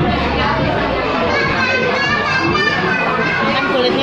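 Background chatter of several voices in a large room, children's voices among them, with no one voice standing out.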